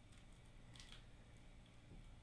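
Near silence: room tone, with a faint click a little before a second in.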